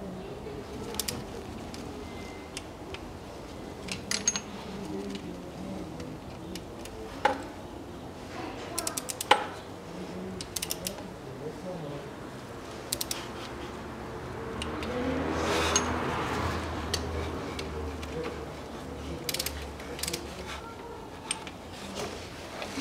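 Ratchet torque wrench working the water pump bolts: scattered single metallic clicks and a few short runs of quick ratchet ticks as the bolts are run in and taken to the first-stage 5 Nm, with a brief handling rustle near the end.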